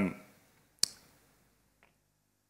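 A single sharp click about a second in, following the tail of a spoken 'um', with a much fainter tick near the end.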